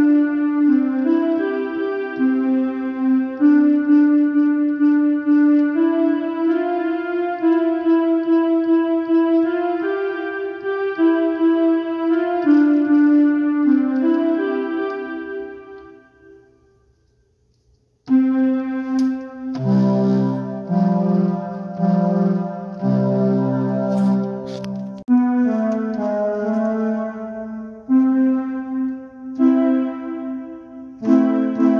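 Portable electronic keyboard playing a melody of held notes that dies away about halfway through. After a second or two of quiet, playing starts again with fuller chords and low bass notes.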